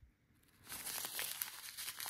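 Soft crinkling of a zip-top plastic bag full of square resin diamond-painting drills as it is turned over in the hand, starting about half a second in after a brief silence.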